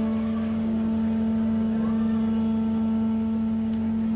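A live band holding a long sustained chord, one steady low note with fainter higher tones over it, without drums or percussion.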